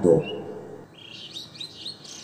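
Birds chirping in the background: a run of short, high chirps beginning about a second in, after a single spoken word at the start.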